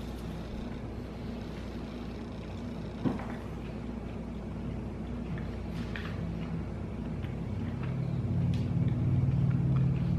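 A steady low hum that swells louder over the last few seconds, with one sharp knock about three seconds in and a few faint ticks after it.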